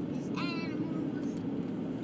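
Steady road and engine noise of a moving car heard inside the cabin, with one short high-pitched vocal sound from a young child about half a second in.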